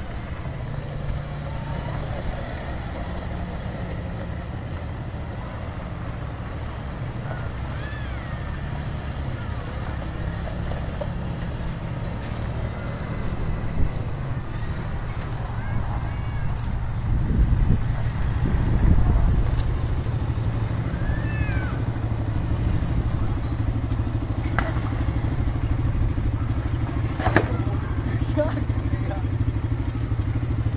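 Quad bike (ATV) engines running on a dirt track: a steady low drone that swells louder about two-thirds of the way through, with faint voices in the background.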